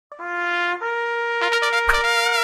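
Short trumpet fanfare: two held notes, then a quick run of short notes, with a drum hit near the end.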